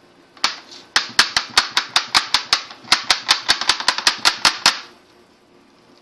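A seal (chop) dabbed repeatedly into red seal paste in a porcelain dish to ink it: about twenty sharp taps, roughly five a second, with a short pause near the middle.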